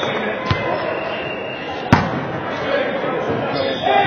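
A volleyball being served: one sharp, loud smack of a hand on the ball about two seconds in, with a lighter thud about half a second in. Underneath is the steady, echoing hubbub of voices and balls in a large gym.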